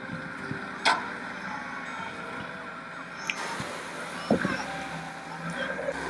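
Diesel engine of a beach lifeboat launch vehicle running steadily, with a sharp knock about a second in and another thump just after four seconds.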